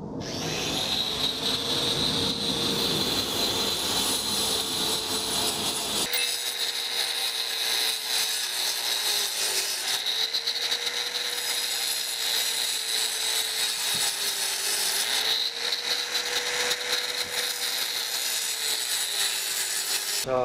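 4-inch angle grinder with a multi-purpose cutting blade cutting through a cement brick: a steady motor whine over a gritty grinding hiss. The pitch sags slightly now and then as the blade takes load.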